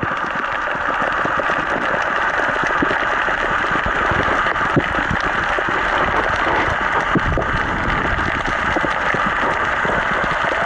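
Steady, muffled underwater noise picked up through a camera's waterproof housing: a constant hiss with low rumbles and scattered faint clicks.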